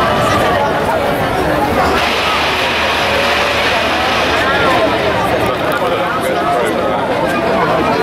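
Crowd chatter: many people talking at once, with no single voice standing out. A hiss comes in about two seconds in and fades out a little past the middle.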